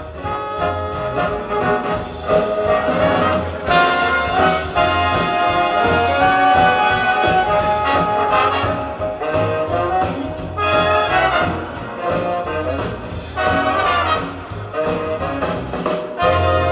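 Big band playing an instrumental brass passage: trumpets and trombones carry the melody in sustained and punched chords over a steady bass line.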